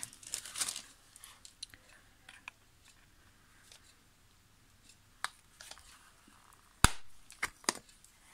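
Paper card handled and rustling, then one sharp, loud click about seven seconds in, followed by a few smaller clicks: a hand punch snapping a small hole through the corner of a thick card journal page.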